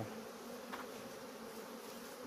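A swarm of honeybees buzzing in a steady hum around a hive box as the swarm settles in and colonizes it.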